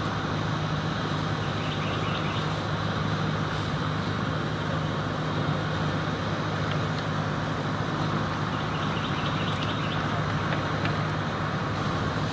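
A steady, unchanging mechanical drone with a low hum in it.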